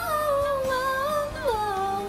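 A woman humming one held note with her mouth closed, stepping down to a lower note about one and a half seconds in, over quiet background music.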